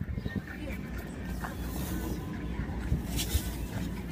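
Wind rumbling on the microphone, with faint voices in the background.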